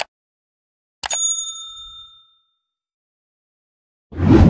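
A short mouse-click sound, then about a second later a single bright bell ding that rings out and fades over about a second: the notification-bell sound effect of a subscribe-button animation.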